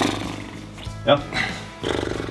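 Background music with a man's voice making two drawn-out vocal sounds, one at the start and one near the end, and a short 'yeah' about a second in.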